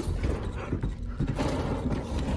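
Footsteps on wooden floorboards: an irregular run of knocks and thuds.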